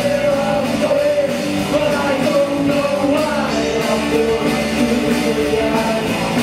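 Live rock band playing loud: electric guitars, bass guitar and drums, with a held melody line bending slowly over the band.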